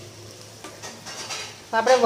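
Wooden spatula stirring a thick green pigeon pea curry in a nonstick kadai over the flame: soft scraping with a light sizzle of the cooking dish.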